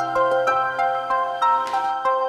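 Soft instrumental background score: a slow melody of clear, held single notes, a new note every quarter to half second.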